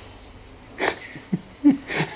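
A person laughing: after a quiet start, a few short, breathy chuckles in the second half.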